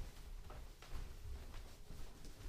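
Soft footfalls of socked feet skipping on a hardwood floor, several light thuds at an uneven pace.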